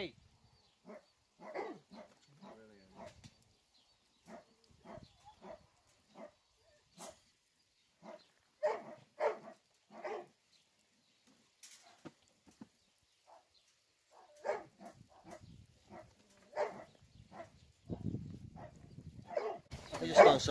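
A dog barking repeatedly in short, irregular barks, with some pauses between them. A low rushing noise comes in near the end.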